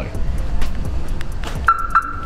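Ford Escort RS Turbo's alarm giving one steady electronic beep, starting near the end, as the key fob is pressed to lock or unlock the car, with a short click as the locks work. Background music plays underneath.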